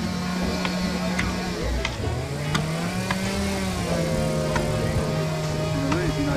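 Axe blows biting into a standing pine trunk as it is notched for felling, sharp knocks about three every two seconds. Underneath runs a steady humming tone that dips and rises in pitch.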